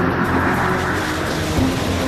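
Background music with sustained low notes over a steady rushing, grinding noise of an icebreaker's hull forcing its way through pack ice.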